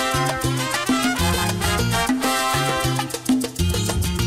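Salsa music from a sonora dance band, an instrumental stretch with no singing, carried by a steady beat and a moving bass line.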